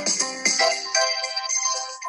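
Electronic keyboard playing a worship song, with bright high notes over lower chords. The low notes drop away near the end, leaving only the high notes for a moment.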